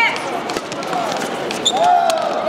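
Badminton rally: a few sharp racket hits on the shuttlecock and players' footsteps on the court floor, with voices in the hall.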